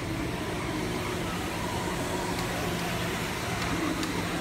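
Kärcher ride-on floor scrubber-dryer running with a steady motor hum.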